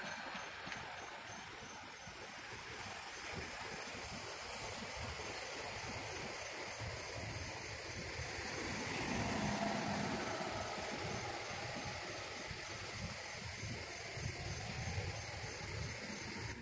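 Street traffic ambience: a steady noise of vehicles, swelling as one passes about nine to ten seconds in.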